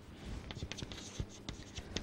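Faint chalk on a chalkboard: a quick run of short taps and scratches as an equation is written.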